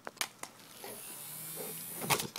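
Small battery-powered handheld fan's motor whirring with a steady buzz from about a second in, after a couple of sharp clicks as a pit bull's teeth knock against the plastic fan.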